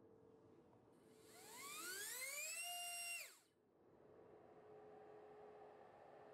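T-Motor F20 1406-4100KV brushless motor with a four-blade 3-inch prop spooling up on a thrust stand. A whine rises in pitch for over a second, holds at full throttle briefly, then cuts off and falls away.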